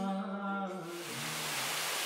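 Music with singing fades out about halfway through, giving way to the steady rush of water spilling over a small concrete dam.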